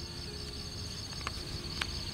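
Insects, crickets by the sound, keeping up a steady high-pitched pulsing trill, with a couple of faint clicks in the second half.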